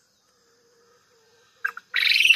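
Faint steady insect chirring, then two short clucks and, at the very end, a brief loud chicken squawk.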